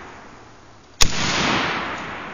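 A single sharp, loud blast about a second in, from rifle fire at a tannerite target, trailing off in a long rolling echo. The fading tail of an earlier blast fills the first second.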